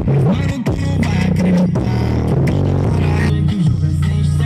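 A funk song with a heavy beat played loud through a car audio system's Digisom subwoofer, deep held bass notes sliding in pitch now and then.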